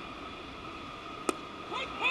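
Steady ballpark background hiss. A little past halfway comes a single sharp pop, a pitched baseball smacking into the catcher's mitt.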